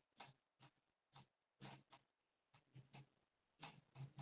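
Near silence with faint, short scratches of a marker writing on a whiteboard, coming in irregular groups of a few strokes a second.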